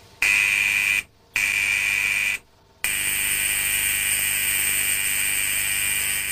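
High-frequency spark-gap generator buzzing loudly with a hissing, high-pitched whine. It is switched on for about a second twice, then left running from about three seconds in, energising an evacuated milk bottle coated inside with fluorescent powder so that it glows.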